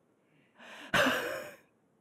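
A person's breathy sigh close to a microphone: a soft breath about half a second in, then a louder out-breath that fades within about half a second.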